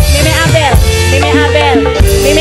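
Loud dangdut music from a mobile street orchestra, in an instrumental passage: a sliding, ornamented melody line over a held note and a steady low bass.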